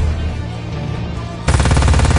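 Rapid fire from a mounted multi-barrel rotary machine gun: a quieter stretch, then a sudden fast burst of evenly spaced shots about one and a half seconds in, over orchestral-style film music.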